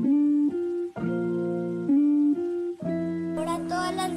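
Background music: a melody of held notes over chords, changing every half second or so, with a brighter, busier layer coming in near the end.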